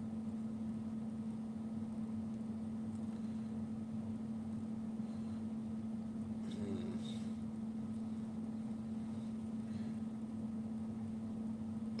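Steady low room hum with a single constant tone underneath, unchanging throughout; a faint short sound comes about six and a half seconds in.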